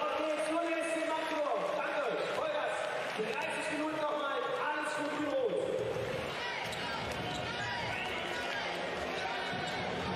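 A large arena crowd singing and chanting together in held notes for the first five seconds or so, then a general crowd din, with a handball bouncing on the court floor.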